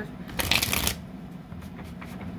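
Tarot cards being shuffled: one quick, crackly burst of card-on-card rustling about half a second in, lasting about half a second.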